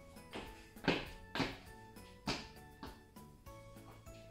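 Feet landing on a tiled floor in a run of two-footed jumps: about five thuds, roughly half a second apart with a short gap in the middle, over background music.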